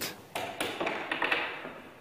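Wooden chess pieces being set down on a board and chess-clock buttons being pressed during a fast time scramble: a run of light taps and knocks.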